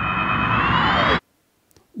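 Electronic transition sound effect: a held, buzzy synthesized chord that swells, then splits into tones gliding up and down in pitch, and cuts off suddenly just over a second in.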